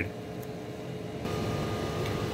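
Steady hum of a switched-on lab analyzer and room ventilation, with a faint constant tone. About halfway through, the hiss grows slightly louder and a faint higher whine sets in.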